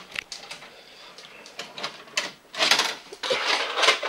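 A VCR stopping and ejecting a VHS cassette: a run of short mechanical clicks from the tape mechanism, with brief rustling bursts of the cassette being handled near the end.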